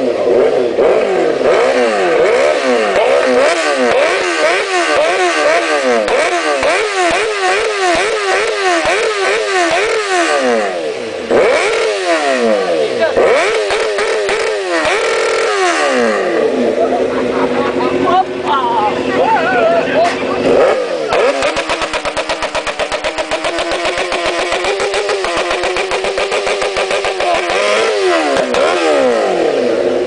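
Sport motorcycle engine revved again and again in quick throttle blips, the pitch rising and falling about twice a second. A few longer revs follow, then the engine settles to a steady idle from about two-thirds of the way through.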